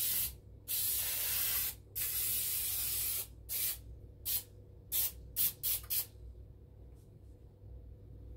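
Aerosol cooking spray hissing into a metal bread pan: a few long sprays of about a second each, then about six short quick spurts.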